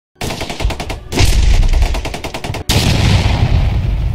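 Intro sound effect of rapid machine-gun fire at about ten shots a second, in two strings, then a sudden loud blast about two and a half seconds in that fades away.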